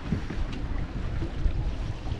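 Wind buffeting the camera microphone in uneven gusts, over the rush of water along the hull of a sailboat under way.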